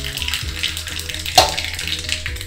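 Hot oil with mustard seeds sizzling in a small iron tempering ladle for the seasoning, with one sharp click about one and a half seconds in, under background music.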